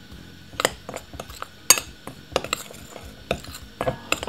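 Metal spoon stirring a dry mix in a glass mixing bowl: irregular clinks and scrapes of the spoon against the glass, with a few sharper knocks scattered through.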